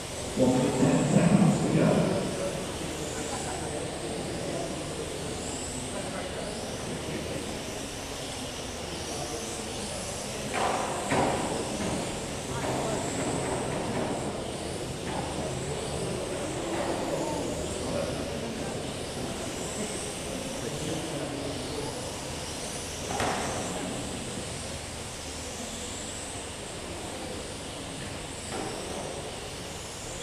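High-pitched whine of 1/12-scale electric RC pan cars, rising and falling in pitch as they accelerate and brake around the track in a large sports hall. Indistinct voices come over the hall's background noise, loudest in the first two seconds.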